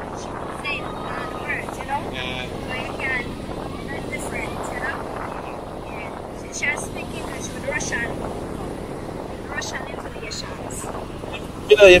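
Steady rushing of wind and small surf waves on a sandy beach, under faint, indistinct talking.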